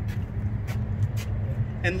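A steady low hum with a few faint, light clicks.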